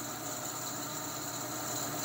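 Steady mechanical background noise from nearby machinery, an even hiss with a faint high-pitched whine running through it.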